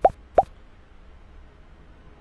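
Two short pops, each a quick rising blip, in the first half second, then only a low steady hum.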